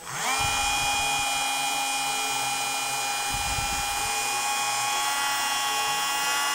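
TACKLIFE RTD02DC cordless 8 V mini rotary tool spinning up at the start, then running at a steady high speed with a high whine while its bit polishes the jaw of a steel wrench.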